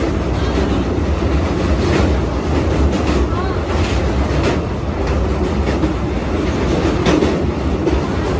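Moving passenger train heard from inside the coach by an open doorway: a steady heavy rumble of wheels and running gear with irregular clacks over the rails, as the train crosses a bridge.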